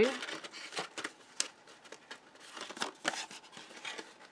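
Cardstock rustling and scraping in the hands as a panel is fed through a slot in a card, with a few sharp paper clicks and quiet gaps between.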